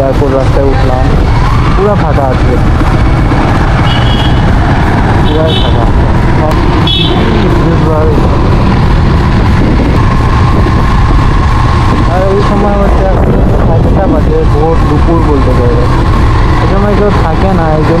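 Wind buffeting the microphone over a motorcycle's running engine while riding along a road. A man's voice talks over it in places, and a few short high beeps sound in the first half.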